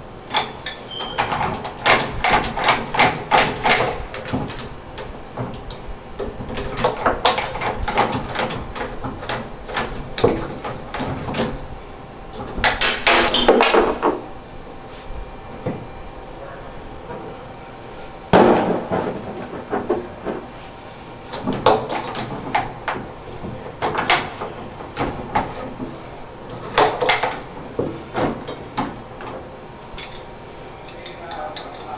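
Tongue-and-groove pliers gripping and turning the brass stems of an old three-handle tub and shower valve to unscrew them: bursts of metal clicking and scraping, with a longer scrape and a sharp knock at about 18 seconds.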